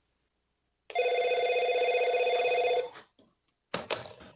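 A single electronic ring like a telephone's, one trilling tone about two seconds long that starts about a second in and stops abruptly. A few brief clicks follow near the end.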